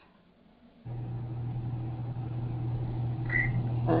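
A steady low hum with faint hiss that cuts in about a second in, after a moment of near silence. A brief faint high tone sounds about three seconds in.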